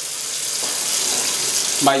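Water running steadily from a tap: a continuous, even rushing hiss.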